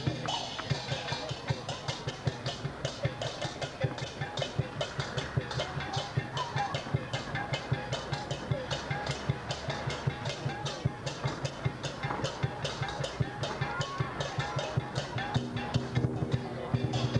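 Dragon-dance percussion: drum and cymbals beating a fast, steady rhythm of about three to four strikes a second.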